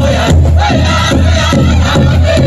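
Powwow drum group: a big drum struck in a steady quick beat, about two or three strikes a second, under the group's chanted singing for the dancers.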